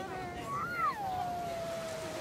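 A single long, drawn-out voice call, most likely a spectator's 'aww', rising briefly then falling to a held note for over a second, over faint crowd chatter.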